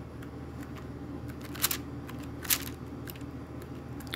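Paper pages of a coloring book being leafed through by hand, with two brief page-turn swishes, about one and a half and two and a half seconds in.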